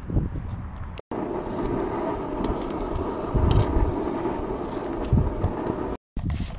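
Steady vehicle rumble with wind noise on the microphone and a couple of low thumps. The sound cuts off sharply about a second in, then starts again.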